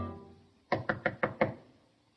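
Five quick, sharp knocks in a rapid series, as the film score dies away just before them.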